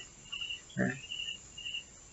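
Faint, short high chirps of an insect, repeating about twice a second in the background, with a brief murmur of voice about a second in.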